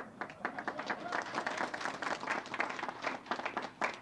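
Audience applauding: a dense patter of many hands clapping that thins out and fades near the end.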